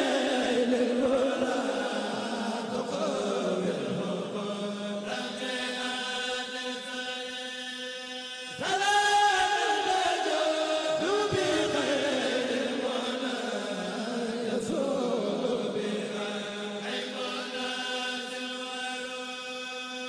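Male voices chanting a Mouride khassida a cappella in long, held, wavering lines. A new phrase starts louder about eight and a half seconds in.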